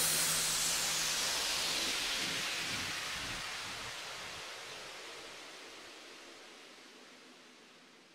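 White-noise sweep from the end of a house track, falling in pitch and fading steadily away after the beat has stopped, with a faint low hum dying out in the first half.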